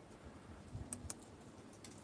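Three faint computer mouse clicks, spaced irregularly, as a software setting is stepped up, over low background hiss.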